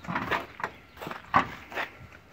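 Driver's door of a 1964 Ford Galaxie 500 being unlatched and swung open, giving several short clunks and clicks from the latch and hinges. The door opens freely, in good working order.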